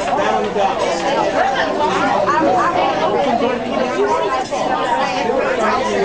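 Dining-room chatter: many people talking at once, steady and overlapping, with no single voice standing out.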